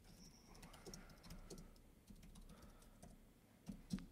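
Faint typing on a computer keyboard: a run of light key clicks as a short text label is typed in.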